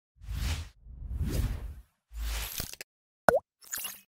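Animated logo sting made of sound effects: three swelling whooshes and a few small ticks, then a sharp bloop that dips and rises in pitch, the loudest sound, and a short bright sparkle that fades out at the end.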